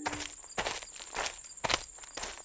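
Footsteps of a person walking through brush on a forest floor, about two steps a second, with a steady high insect trill behind.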